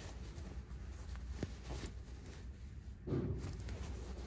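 Faint handling of a military parka's zippered sleeve pocket: light fabric rustling and a few small clicks from the YKK zipper and its pull, over a low steady room hum.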